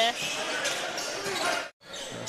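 Game sound from an indoor basketball court: crowd murmur and court noise during play. It cuts off abruptly near the end.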